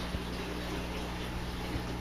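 Steady trickle of running water from an aquaponics system, over a low steady hum.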